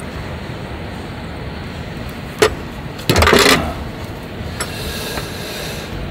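Makgeolli poured from a bottle into wooden cups, with light knocks of bottle and cups on a metal tray and a short louder rush about halfway through, over a steady low rumble.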